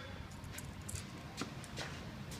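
Quiet shop room tone with about four faint, short taps spread over two seconds.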